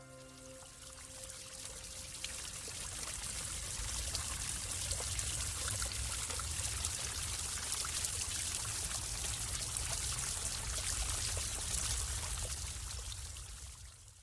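Steady rush of running water, like a stream. It fades in over the first few seconds and fades out at the end.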